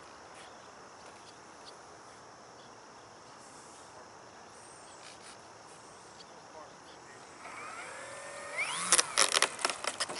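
Quiet outdoor background with faint insects, then near the end the electric motor of a radio-controlled P-51 Mustang model spooling up in a rising whine for its takeoff run, followed by loud bursts of noise.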